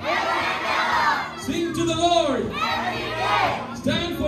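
A group of children shouting lines of a pledge back in unison, three loud chanted phrases in quick succession.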